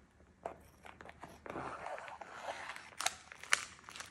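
Kitchen scissors cutting through the plastic film between vacuum-sealed packs of chicken thighs, with the packaging crinkling as it is handled. There are a couple of sharp snips about three seconds in.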